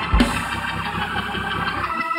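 Organ playing held chords, with a single low thump just after the start.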